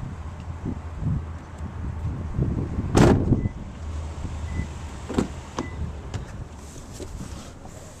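Car door handling on a 2009 Toyota RAV4: a loud door thump about three seconds in, then lighter latch and handle clicks about five seconds in, with shuffling and handling noise between, over a low steady hum.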